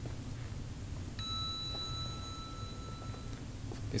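Elevator arrival chime: a single bell-like tone that starts about a second in and holds for about two seconds before stopping. It sounds over a steady low hum.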